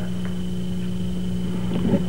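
Steady low electrical hum with a faint high whine above it, running unchanged: the background hum of the speech's sound system or recording.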